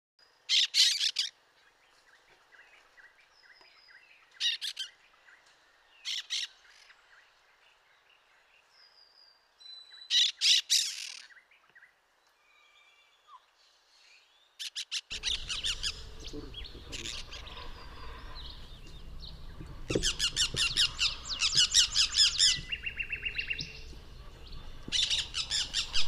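Orange-fronted parakeets (Eupsittula canicularis) giving harsh, screeching calls: short separate bursts a few seconds apart at first, then from about 15 seconds a denser run of rapid calls over a low background rumble.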